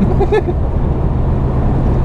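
Steady low rumble of engine and tyre noise inside a motorhome's cab at highway speed.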